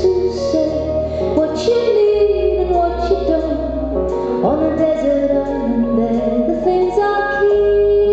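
A woman singing a slow, gentle melody to her own acoustic guitar, with sustained low notes underneath.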